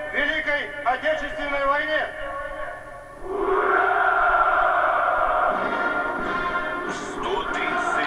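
A man's voice echoing over the parade loudspeakers, then from about three seconds in the ranks of naval cadets answer with one long, drawn-out massed shout of "ura". It is all heard through a television set's speaker.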